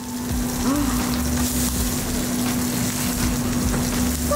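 Pork sisig sizzling on a hot cast-iron sizzling platter: a steady hiss, with a steady low hum underneath.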